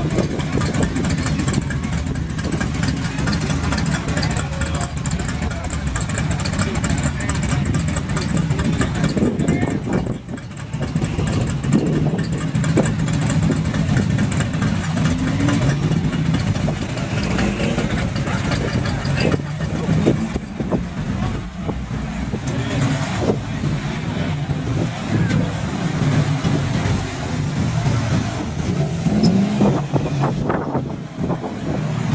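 Passing street traffic: a steady low engine rumble from cars and trucks driving by, with the engine note rising and falling several times as vehicles pull past and accelerate.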